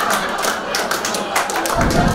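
Comedy club audience applauding, with many overlapping claps. A short low-pitched music sting comes in near the end.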